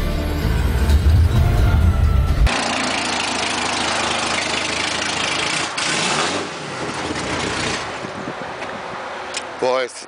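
Film music with a heavy bass for the first couple of seconds, then a Hudson Hornet race car's engine running loud and throaty, easing to a lower level near the end.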